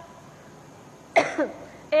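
A woman coughs once, briefly, into a close microphone a little over a second in, against quiet room tone.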